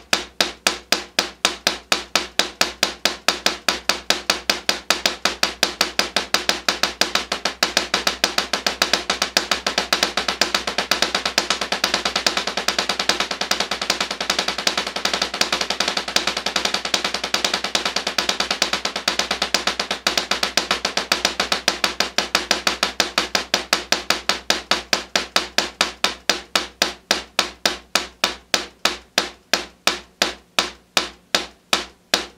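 Wooden drumsticks playing a paradiddle sticking (right-left-right-right, left-right-left-left) on a practice pad set on a snare drum. The strokes start slow, speed up to a fast, dense roll through the middle, then slow back down near the end.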